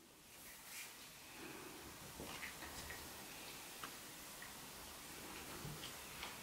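Faint, irregular small clicks and taps of plastic Play-Doh tools and pots being handled on a table, over quiet room tone.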